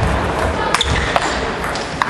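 Table tennis balls clicking on tables and bats: a few separate sharp ticks over the steady background noise of a large hall.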